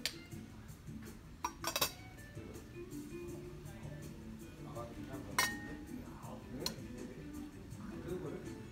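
China teacups, saucers and cutlery clinking on a tea table: a few sharp chinks, a quick cluster of them about two seconds in, and one ringing chink about halfway through.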